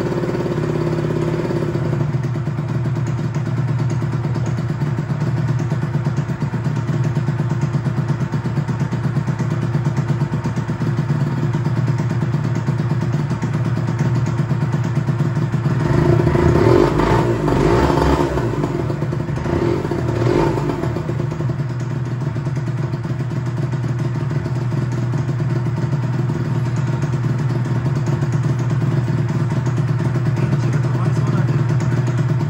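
Honda NSR250R SP two-stroke V-twin idling steadily, then given two or three blips of the throttle a little past halfway that lift the revs only sluggishly before they drop back to idle: the engine won't rev up cleanly.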